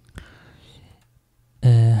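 A faint click and a soft breathy sound, then about one and a half seconds in a man's voice starts reading an Arabic sentence aloud.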